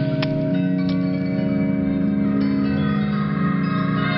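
Music-box waltz playing: a chiming tune of steady bell-like notes.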